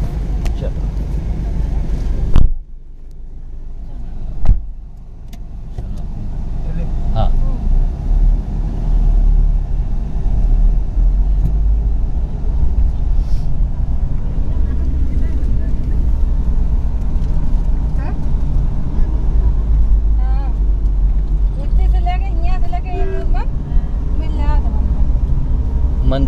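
Two car doors slamming, about two seconds apart, then the car's engine and road rumble heard from inside the cabin as it pulls away, building up and then holding steady.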